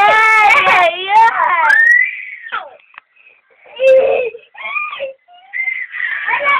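Baby vocalizing: loud, high-pitched, wavering cries through the first two and a half seconds, then shorter high calls around four and five seconds in.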